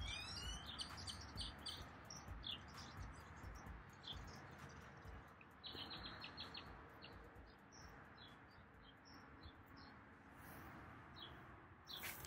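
Birds chirping faintly: short high chirps scattered throughout, with a quick run of repeated notes about halfway through.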